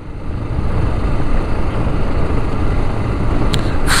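A Dafra Next 300 motorcycle under way: a steady rush of wind on the microphone mixed with engine and road noise, growing slightly louder.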